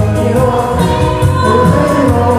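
Karaoke singing: a man and a woman singing into microphones over a backing track with a steady bass line.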